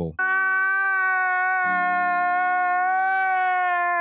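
A man crying in one long, unbroken wail, held at nearly the same pitch.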